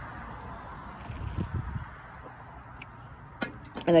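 A man sipping a gin cocktail from a glass and swallowing, faint little sounds about a second in over a steady background hiss. A short click comes shortly before he starts speaking near the end.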